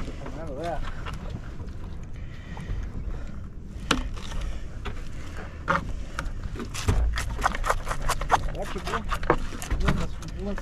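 Knife cutting fish into chunks of cut bait on a boat's cutting board: a run of sharp taps and knocks that comes thicker in the second half, over a steady low rumble.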